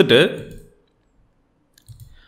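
A man's voice trailing off at the end of a word, then about a second of near silence, and a faint computer mouse click near the end.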